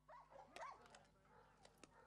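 Schnauzers making faint, short whining sounds, mostly in the first second, with a few small clicks while they gnaw on raw chicken.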